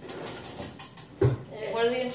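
A single dull thump about a second in, then a voice starts speaking.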